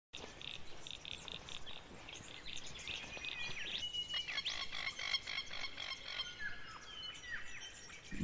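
Bush ambience of birds and frogs calling: runs of rapid high pulsed calls, about five a second, mixed with chirps and short downward-sweeping whistles over a faint outdoor hiss.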